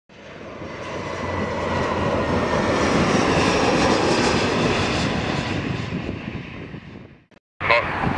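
Jet aircraft passing over: a rushing engine noise with a faint high whine swells up over a few seconds, then fades away. It is followed by a moment of silence and the start of voices just before the end.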